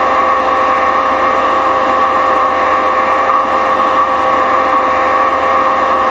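A steady hum over hiss, several tones held at an unchanging level, as background noise on the recording.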